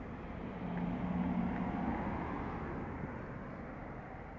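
A motor vehicle passing, its low engine hum swelling about a second in and fading away by the end.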